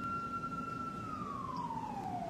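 A siren wailing: one steady high note that then slides down in pitch through the second half.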